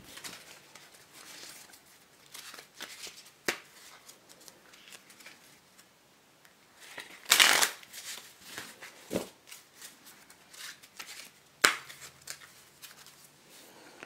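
Bicycle playing cards being handled: scattered sharp card snaps and soft sliding, with one longer rustling burst about halfway through.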